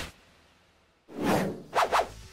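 Whoosh sound effects of an animated intro: a swoosh fading out at the start, then a quiet moment, then a loud swelling swoosh about a second in and a second, sharper swoosh just before the end.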